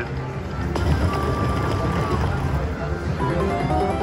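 Video slot machine game sounds: electronic music with a held tone and short chime-like notes as the reels spin and stop, over a steady casino background hum.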